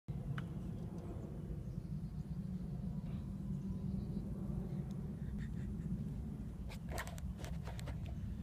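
Low, steady outdoor background rumble, with a quick run of sharp clicks about seven seconds in.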